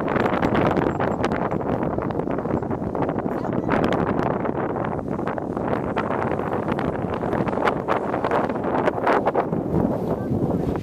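Wind buffeting the microphone outdoors: a continuous, uneven gusting noise.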